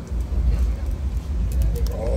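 Roadside street ambience: a steady low rumble of road traffic, with a few sharp clicks about a second and a half in.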